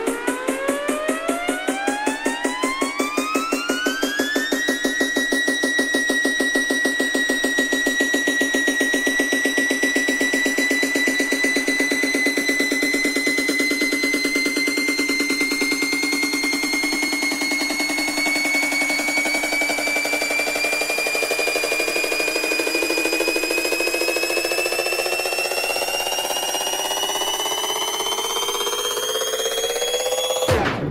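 Wigan Pier-style bounce dance music in a build-up: a synth tone sweeps steeply upward over the first few seconds, then holds and keeps rising slowly over a fast, steady pulsing beat.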